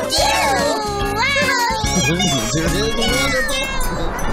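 Excited high-pitched voices with swooping, gliding pitch over children's song music that carries on underneath.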